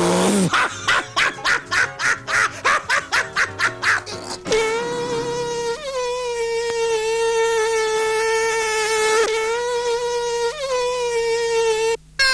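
Cartoon sound track: a rapid stuttering pulse, about four a second, for the first four seconds or so, then a long steady whine held to the end, dipping briefly in pitch a few times.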